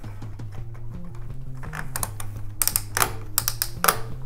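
The rear wheel ratchet strap of a Thule T2 Pro XT hitch bike rack being pulled tight around the tyre, a quick run of clicks in the second half. Background music plays throughout.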